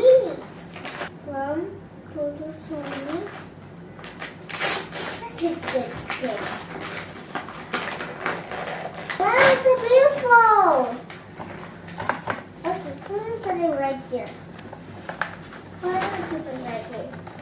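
A young girl's voice, with no clear words, over gift wrapping paper crackling and tearing as she opens a present.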